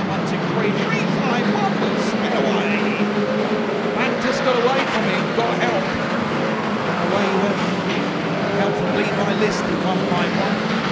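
Engines of a pack of saloon stock cars racing round an oval, a steady drone with pitches rising and falling as cars rev. A few short sharp knocks stand out, about two, four and nine seconds in.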